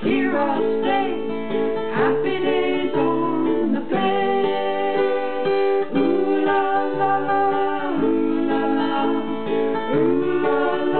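Strummed acoustic guitar accompanying sung vocals in a home-made song performance, with steady held notes throughout.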